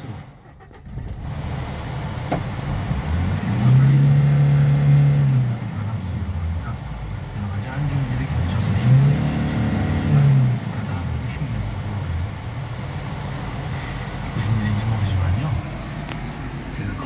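Hyundai Porter truck engine starting about a second in, then idling, heard from inside the cab. It is revved up and let fall back three times, the pitch rising and dropping each time.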